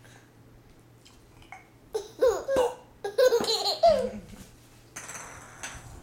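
A baby laughing in bursts of high-pitched giggles, loud, for about two seconds in the middle, followed by a brief rustling noise near the end.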